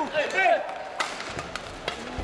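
Two sharp smacks of badminton rackets striking a shuttlecock, about a second in and near the end, ringing in a large sports hall, with voices calling early on.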